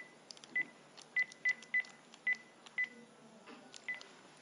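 Mobile phone keypad beeping as a number is dialled: about eight short beeps of the same pitch at an uneven pace, each with a faint key click.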